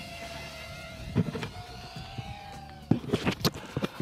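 Mini quadcopter's electric motors whining at a fairly steady pitch that dips slightly and rises again, with a few sharp clicks near the end.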